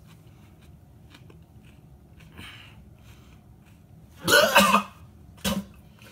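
A man coughing and gagging from the burn of a raw jalapeño: a loud double cough about four seconds in, then a short sharp one near the end.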